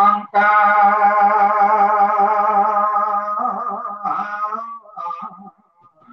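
A male voice chanting Khmer smot (Buddhist poetic chant), heard over a video call. He holds one long note with a slight vibrato, then moves into a wavering, ornamented run that fades out near the end.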